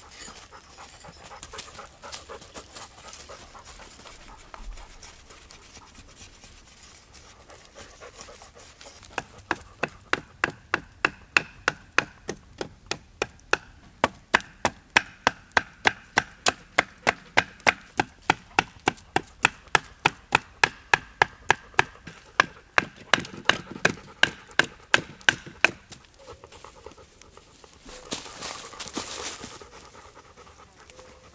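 A knife blade shaving strips off a green hazel bow stave in quick, even strokes, about two or three a second. The strokes start about a third of the way in and stop a few seconds before the end. Softer scraping of the blade on the wood comes before them.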